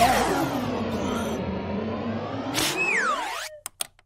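Cartoon sound effect for a swallowed false nail: a long swooping sweep that dips and rises over about three seconds, then a falling whistle-like glide and a few quick pops near the end.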